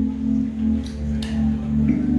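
Live rock band with electric guitar, bass, keyboards and drums playing between sung lines: a chord held steady over the bass, with a couple of light high hits.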